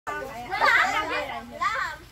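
Several children's voices talking and calling out over one another, high-pitched and lively.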